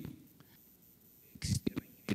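A pause in a man's speech through a handheld microphone: quiet room tone for over a second, then a breath and soft, hissy speech sounds near the end as he starts talking again.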